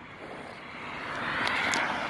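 A passing vehicle's rushing noise swells up over about a second and then holds steady.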